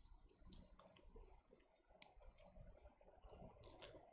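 Near silence: faint room tone with a few scattered short clicks, the clearest cluster near the end.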